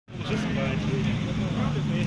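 A fire engine's motor running steadily at a fire scene, a constant low drone, with people's voices talking over it.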